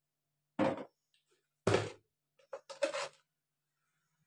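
Three short bumps and rustles of handling at a kitchen plate, each a fraction of a second long and about a second apart.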